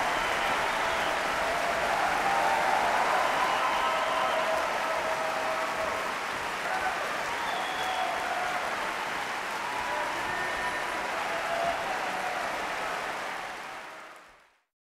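A large concert-hall audience applauding in a sustained ovation, fading out near the end.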